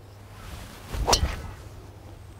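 Tee shot with a golf driver: a short rising swish of the swinging club, then about a second in the sharp click of the clubhead striking the ball.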